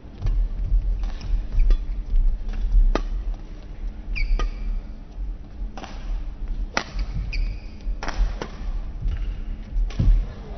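Badminton doubles rally in a large hall: rackets crack sharply against the shuttlecock about once or twice a second, shoes squeak briefly on the court twice, and feet thud on the floor beneath.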